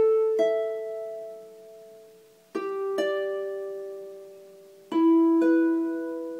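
Double-strung harp played in rocked fifths: a low note plucked, then the fifth above it about half a second later, both left to ring and fade. Three such pairs step down, one about every two and a half seconds.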